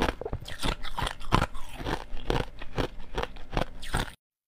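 Thin ice being chewed close to a lapel microphone: a run of sharp, irregular crunches, a few each second.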